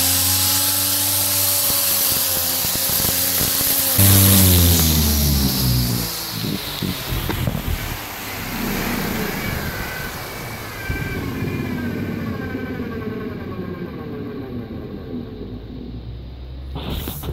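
Electric weed-trimmer motor driving a disc of steel blades at high speed with a steady whine. About four seconds in it surges louder, then its pitch falls away over the next two seconds as it winds down. After that comes a rougher, irregular whirring and rattling of the blades.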